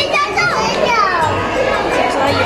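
Children's voices and chatter from a crowd of visitors, with one high voice sliding down in pitch about half a second in.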